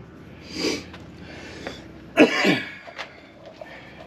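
A person coughs in two short bursts: a softer one about half a second in, then a louder one a little after two seconds.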